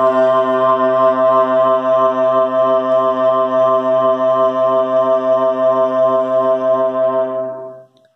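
A single note from a one-shot sample, triggered from a Maschine keyboard, holding one steady pitch with a droning tone and fading out just before the end. The sample rings on far too long to play like keys on a keyboard.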